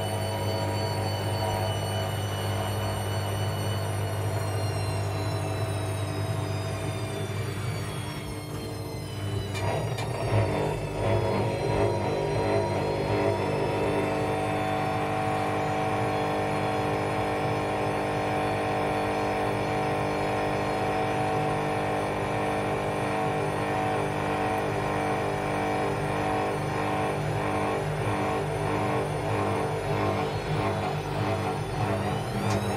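Bush Rapid 15 washing machine in its 800 rpm final spin: a steady motor and drum whine that falls in pitch from about four to nine seconds in, then a few knocks, then settles into a steady whine again.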